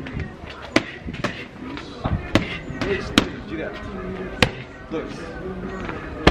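Muay Thai strikes from boxing gloves landing on Thai pads and focus mitts held by a trainer: about five sharp smacks at irregular spacing, with the loudest near the middle and near the start.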